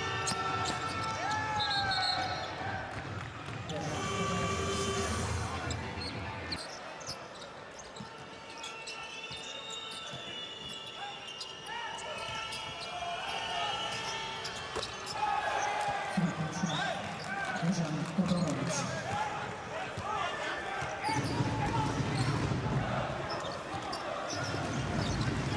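Basketball game sound in a large arena: the ball bouncing on the hardwood court in repeated sharp strikes, with players' voices and crowd noise around it.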